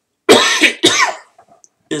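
A man coughing twice into his hand, two sharp coughs about half a second apart, louder than his speaking voice.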